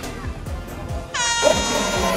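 A horn blast starting about halfway in and held for about a second, sounding over background music with a steady beat.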